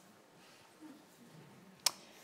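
A quiet pause of faint room tone, broken near the end by a single short, sharp click.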